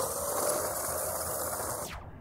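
Steady hiss of wind noise on the microphone, with faint footsteps on gravelly desert ground as the camera operator backs up. The hiss drops away suddenly just before the end.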